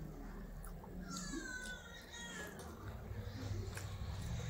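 A high-pitched animal call, wavering and then falling, from about a second in for roughly a second and a half.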